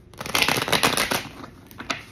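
Tarot deck being riffle-shuffled by hand: a quick, dense run of card flicks lasting about a second, followed by a couple of separate clicks as the deck is pushed back together.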